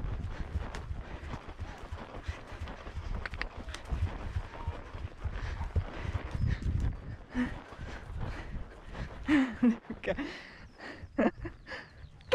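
A horse's hoofbeats at speed on grass, heard from the saddle, with a low rumble under them as it approaches and goes over a small log fence.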